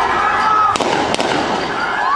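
A quick series of sharp bangs about a second in, over a noisy street commotion with voices.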